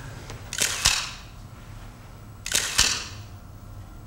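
Press photographers' still-camera shutters firing in two quick bursts of clicks, about half a second in and again about two and a half seconds in, as a posed handshake is photographed.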